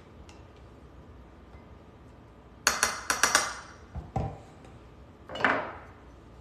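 Glass jar and utensil clatter on a kitchen counter: a quick run of sharp clinks about two and a half seconds in, a dull thump about a second later, and a brief scraping clatter near the end.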